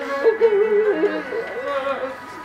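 A woman's voice singing a slow, wavering melody, holding notes and stepping between them, with other voices fainter behind it.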